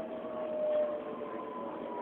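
Electric passenger train heard from inside the carriage: a steady rumble of the running train with the traction motors' whine in several tones that sink slowly in pitch as the train slows.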